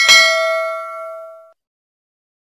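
Notification-bell ding sound effect of a subscribe-button animation, marking the bell being clicked. It is one bright ding with several ringing tones that fades over about a second and a half, then cuts off suddenly.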